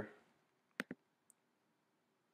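Two quick clicks of a computer mouse button about a second in, followed by a fainter tick; otherwise near silence.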